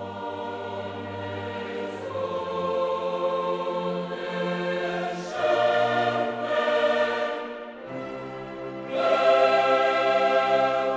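Choral music: a choir singing long held chords in German, swelling louder about halfway through and again near the end.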